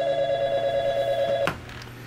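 Desk telephone ringing: a single trilling electronic ring about a second and a half long, then it stops.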